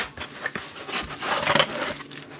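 Cardboard accessory box being handled and slid on a wooden desk: an irregular scraping rustle of cardboard that grows a little louder in the second half.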